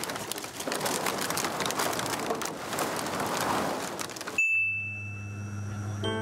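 Dense, continuous crackling and clattering of heaps of empty plastic bottles being trodden on and handled. It cuts off abruptly about four seconds in, replaced by a steady low hum and a brief high tone.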